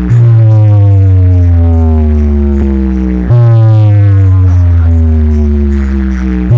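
Very loud electronic bass test music played through a large DJ sound system: a deep droning bass note slides slowly down in pitch and restarts about every three seconds, twice here, with a faint quick ticking beat on top.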